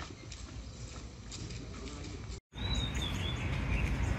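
Outdoor ambience: light footsteps on a paved path over a low background noise, then the sound cuts out briefly and a steadier low rumble comes in, with a short falling bird chirp about three seconds in.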